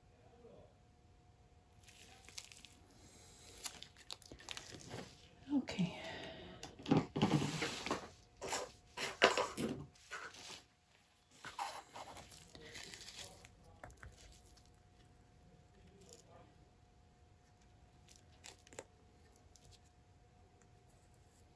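Gloved hands rustling and scraping as they wipe excess wet acrylic paint off the edges of a poured tile, in irregular bursts that are loudest about halfway through and die away to faint handling near the end.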